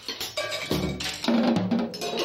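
A drum kit played solo with sticks: a quick run of strikes on the drums and small percussion, joined by deeper drum hits about two-thirds of a second in.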